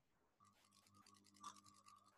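Near silence: faint steady electrical hum, with one faint click about one and a half seconds in.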